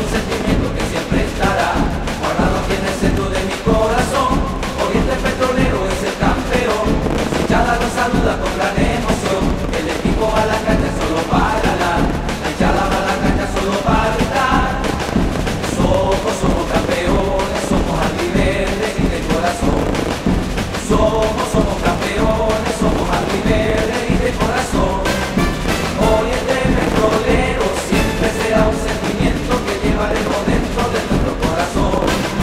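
Live band music with a backing percussion section, a man singing a football club anthem over it without pause.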